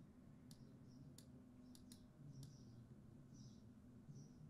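Near silence: room tone with a few faint, sharp computer-mouse clicks in the first half.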